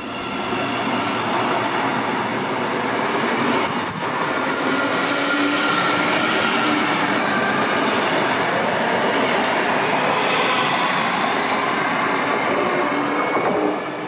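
Siemens Mireo electric multiple unit running past a station platform at close range: steady rolling noise with a faint traction whine. The sound dips briefly about four seconds in.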